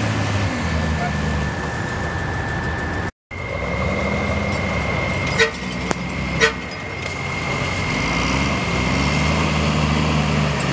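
Engine of a bobbed military 2½-ton 'deuce' truck running under load as it works through a mud hole, the revs rising toward the end. Two short, sharp toots sound about a second apart a little past halfway, and the audio cuts out briefly about three seconds in.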